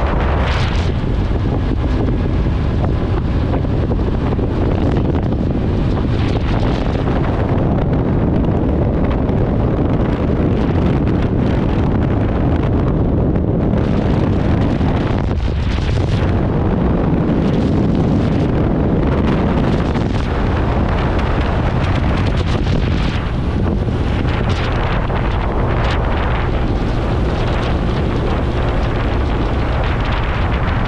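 Loud, steady wind buffeting the microphone of a moving motorcycle, with the rumble of the ride underneath.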